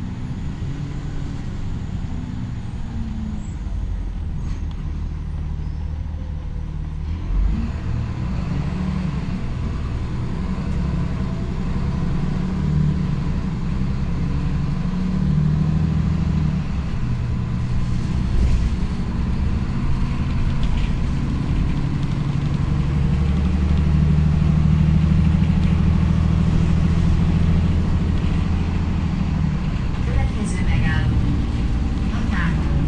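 Inside an Ikarus 127V city bus on the move: the engine hum and road noise of the bus in motion, with a single bump about seven seconds in. The engine grows louder through the second half as the bus picks up speed.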